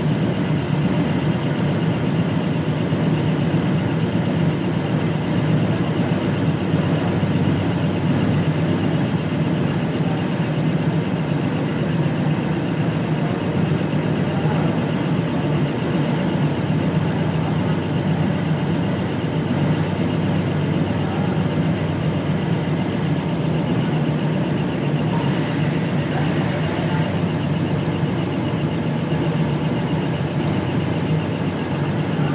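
Industrial sewing machine running continuously at speed, stitching fabric tape into piping cord (dori): a steady, even mechanical whirr with a fast stitching chatter.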